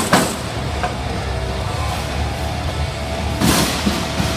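Combat robots fighting in an arena: a steady low drive-motor rumble over background music, with two sharp hits right at the start and a longer noisy crash about three and a half seconds in.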